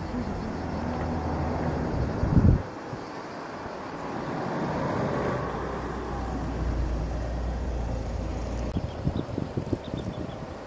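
Outdoor field recording with a motor vehicle's engine running close by: a steady low hum that stops abruptly after a bump about two and a half seconds in. A lower rumble then swells and fades.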